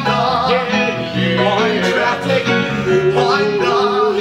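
Live band music for a musical-theatre dance number, led by plucked strings, with a wavering held note late on.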